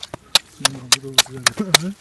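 A hatchet chopping into lake ice at a fishing hole: about six sharp strikes in quick succession.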